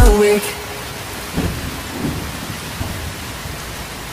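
The song's final sung note and beat stop about half a second in. What remains is a steady hiss like rainfall, with low rumbles of thunder swelling twice, about a second and a half and two seconds in.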